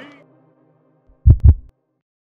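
Outro logo sound effect: a double deep boom, two low hits about a fifth of a second apart, about a second and a quarter in. Before it the last of the previous audio fades out quickly.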